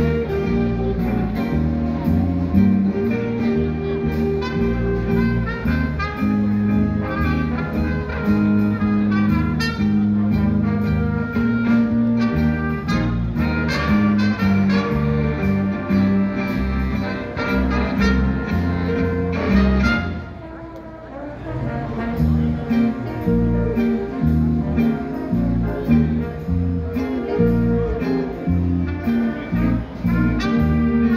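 Live big band jazz: a saxophone section and brass playing over a steady beat. The band drops out for about a second two-thirds of the way in, then comes back in.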